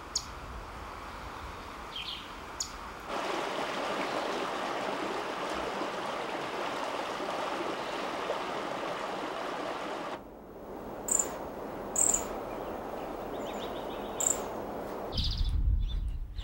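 Small songbirds giving scattered short, high chirps over a steady rushing outdoor background. The background cuts off abruptly about ten seconds in, and a few more high chirps and a short trill follow.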